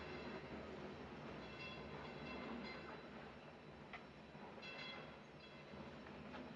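Faint background rumble and hiss, with soft high-pitched tones that swell and fade about three times, and a small click about four seconds in.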